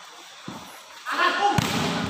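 A volleyball being hit during a rally: a faint knock about half a second in and a sharp, louder hit past the middle, while shouting voices break out over the second half.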